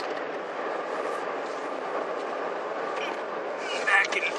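Steady road and engine noise inside the cabin of a moving car: an even rushing noise with no distinct events.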